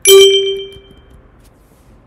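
A single loud ding of a computer alert chime, a bell-like tone that strikes at once and rings away over about a second.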